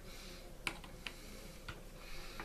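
A few faint, sharp clicks, about three over two seconds, of a small screwdriver meeting the screws and metal parts of a Penn 450SSG spinning reel's body while its crosswind block screws are being worked.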